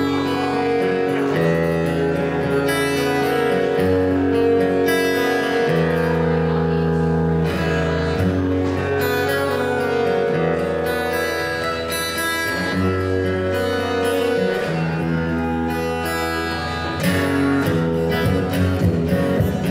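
Solo acoustic guitar playing an instrumental intro: ringing chords over low bass notes, changing every second or two at an even level.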